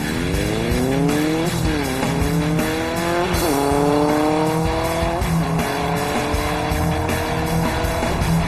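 Motorcycle engine accelerating hard away through the gears: its pitch climbs, drops back at each of three upshifts roughly two seconds apart, and climbs again.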